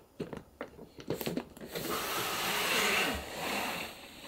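A curtain being drawn open along its ceiling rail: a few small clicks and knocks, then a rough sliding swish of fabric and runners from a little under two seconds in, fading just before the end.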